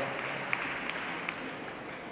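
Audience applause dying away, with a few scattered individual claps standing out.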